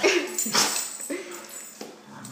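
Two Norwegian Elkhounds play-fighting: about four short barks and yips in two seconds, with scuffling noise under them.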